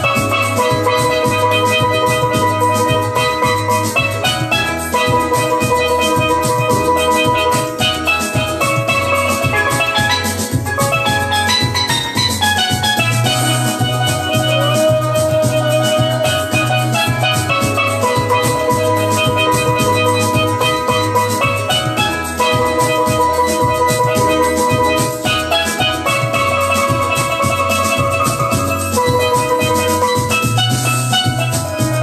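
A chrome steel pan played with sticks: a continuous melody of struck notes, with some notes held as rolls, over a steady beat.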